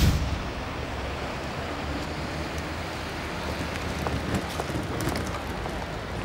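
Steady outdoor city street ambience, a noisy hiss of traffic with a few faint clicks. It opens on the tail of a loud whoosh that fades within the first half second.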